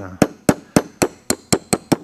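A small brass-faced hammer taps a 1/16-inch starter punch about eight times, roughly four light strikes a second, each with a short high metallic ring. The punch is driving the catch-hook pin out of a rusted Winchester 1873 set trigger assembly, and the pin is coming out far easier than expected.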